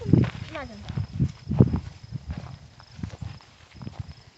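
Footsteps and rustling through tall dry grass and brush: irregular soft thumps with a few sharp snaps, after a child's brief call at the start.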